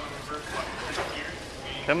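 Faint, indistinct voices over a steady low background noise, with a louder spoken word right at the end.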